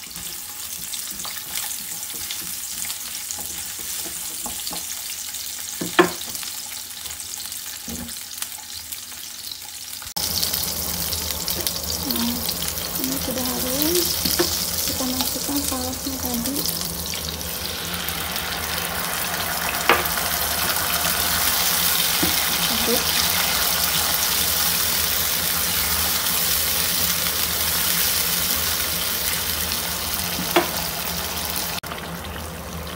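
Diced red onion sizzling in oil in a nonstick frying pan, with a few sharp spatula taps. About a third of the way in, it cuts to a louder, steady hiss of the tomato sauce mixture bubbling in the pan.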